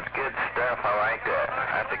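Speech heard through a CB radio receiver, narrow in range and hard to make out: a recording of an earlier transmission being played back over the air.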